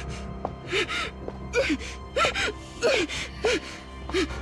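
Muffled gasps and whimpers from a woman gagged with a cloth: a string of short, breathy cries, each bending up and down in pitch, over steady background music.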